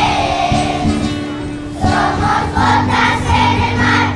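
A group of schoolchildren singing a song together as a choir, over steady held accompaniment notes.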